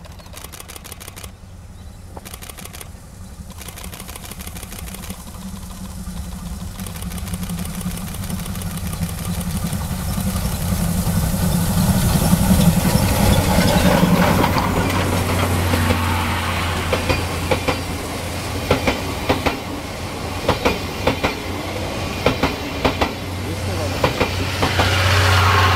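Steam locomotive D51 498, a JNR Class D51 2-8-2, drawing near under steam and growing steadily louder, loudest as it passes. Its train of passenger coaches then runs by with a regular clickety-clack of wheels over the rail joints.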